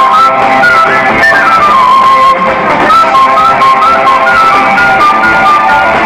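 Loud live band music: a lead melody of short, quick notes over a steady beat.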